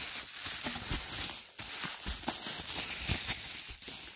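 Plastic bubble wrap crinkling and rustling as it is handled and pulled apart by hand during unwrapping, with many small crackles.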